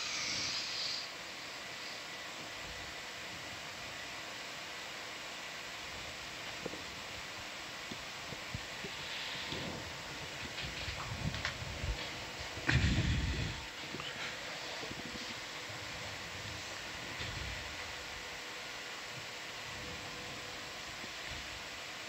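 Steady low background hiss with a faint constant hum, broken about halfway by a short low rumble and a few small clicks.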